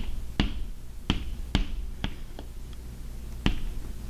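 Chalk on a chalkboard while writing: a run of sharp, irregular taps and clicks, about seven in all, as the chalk strikes the board. A steady low hum runs underneath.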